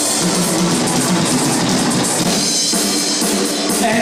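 Live band playing an instrumental passage on drum kit and guitars.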